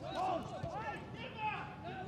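Faint, scattered shouts and calls of footballers on the pitch, picked up by pitch-side microphones during open play.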